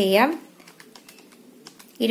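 Buttons of a Casio desktop calculator pressed one after another, a run of small plastic clicks as a figure is keyed in.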